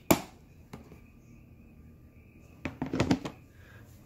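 Clear plastic storage tub being handled: a sharp click of the lid at the start, then a few light plastic knocks and thuds, with a cluster of them near the end.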